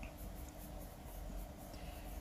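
Black watercolour pencil scratching faintly on card stock in a run of short, quick colouring strokes.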